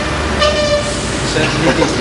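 Motor vehicle engine running with a steady low rumble, and a short toot about half a second in.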